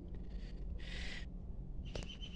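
A cat gives a short, breathy mew about a second in, over a steady low rumble.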